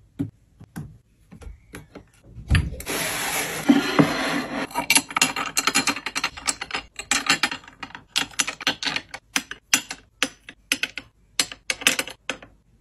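Glass perfume bottles being picked up and set down on a tray: a run of small clicks and taps, with a stretch of rustling hiss about three to five seconds in.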